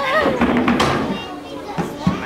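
Voices in a large hall: a high voice wavering up and down at the start, with other voices around it, and a sharp knock near the end.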